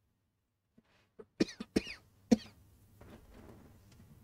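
A person coughing into the microphone: a quick run of short coughs starting about a second in, the last one the loudest, followed by a faint steady hum.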